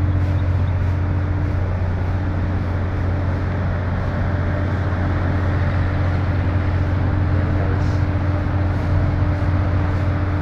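A steady low motor hum with a constant pitch, unchanging throughout.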